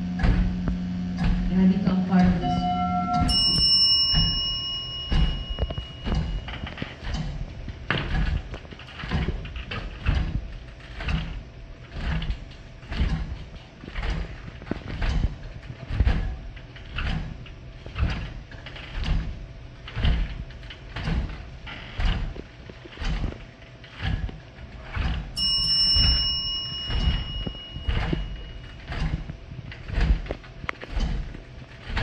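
A stage soundscape: a steady low hum for the first few seconds, then a slow, even beat of low thuds, about one a second, with a ringing chime-like tone sounding twice, about three seconds in and again near the end.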